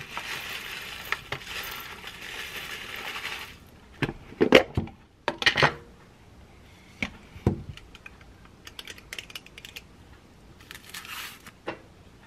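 Granola poured from a plastic bag into a glass dessert bowl, the dry pieces pattering and clinking against the glass for about three and a half seconds. Then a few sharp knocks and clacks about four to six seconds in, followed by scattered softer clicks.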